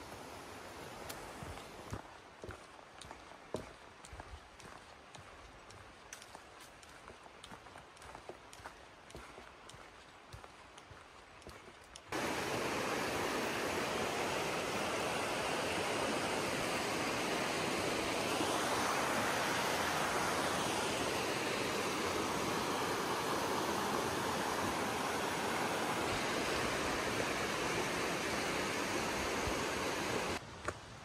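For about the first twelve seconds, only faint scattered footfalls on a dirt trail; then, suddenly, a loud steady rush of river water over rapids takes over and continues unbroken.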